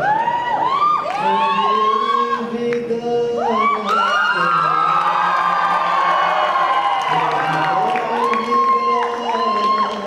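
Audience cheering and whooping, many voices rising and falling over one another throughout.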